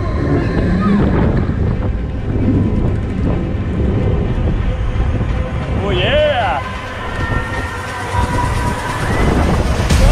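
MACK extreme spinning coaster car running along its steel track at speed, a steady loud rumble of wheels and rushing wind on the microphone. About six seconds in, a rider lets out a short wavering scream.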